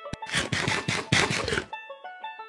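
Crunching sound effect of nuts being bitten and chewed: a single click, then a dense crackling run of crunches lasting about a second and a half, over light background music.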